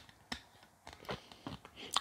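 A few faint, scattered clicks of fingers gripping and working a small metal knob on a Blue Yeti microphone's body.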